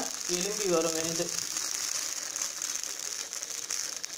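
Oil sizzling and crackling in a cast-iron paniyaram pan as batter cooks in its oiled cavities, a steady hiss with fine rapid crackles.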